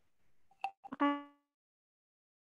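A sharp click, then a short electronic chime that rings and dies away within about half a second, as from a computer notification sound in an online video call, after which the audio drops to dead silence.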